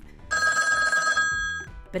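Classic analog telephone bell ringing once, a single ring about a second and a half long.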